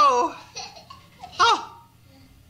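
A single high voice laughing: a drawn-out laugh tailing off at the start and a short one about one and a half seconds in.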